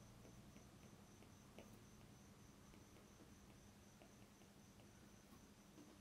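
Near silence: faint room tone with a faint high-pitched tone pulsing about three times a second and a few light ticks.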